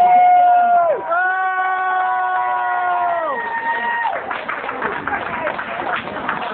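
Unaccompanied singing: a voice holds a long note, drops, then holds another with a second voice alongside, ending about four seconds in. A small crowd then cheers and claps.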